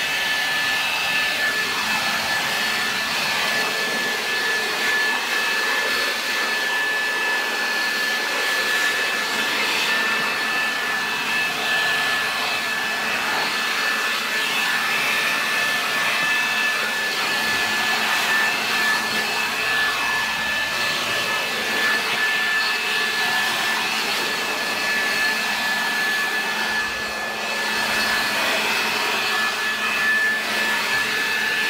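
Leaf blower running steadily through the van's interior, blowing out dust and debris, with a constant high whine over the rush of air.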